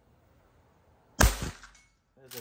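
A Henry H001 .22 rimfire lever-action rifle firing one sharp shot about a second in, with a short echo trailing off.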